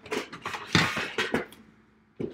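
Cardboard card boxes handled against a metal tin: a few quick knocks and scrapes in the first second and a half, then it goes quiet.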